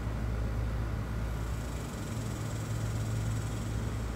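A steady low mechanical hum with an even background hiss, unchanging throughout.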